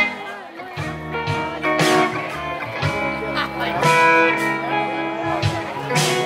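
Live band playing the instrumental opening of a blues-rock song: electric guitar chords over bass, with a sharp strike about once a second.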